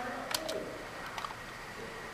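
A few faint computer-mouse clicks over quiet room noise with a thin steady high tone, plus a soft, short, low pitched sound about half a second in.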